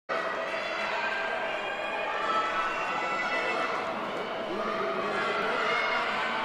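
Indistinct chatter of several voices in a large gymnasium, steady throughout.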